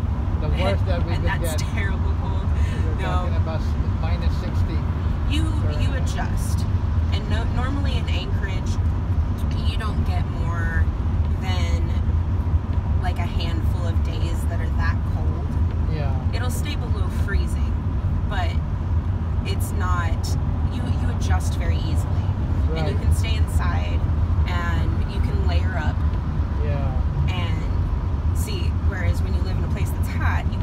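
Steady low drone of a Chevrolet van's engine and tyres at highway speed, heard from inside the cabin, with conversation over it.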